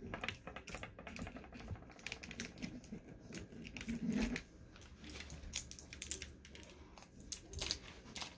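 Faint, irregular clicks and small rustles, several a second.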